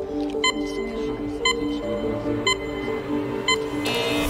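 Quiz-show countdown music: a looping tense musical bed with a short, bright electronic tick about once a second, counting down the answer time. Right at the end a new, harsher high tone cuts in as a contestant buzzes in.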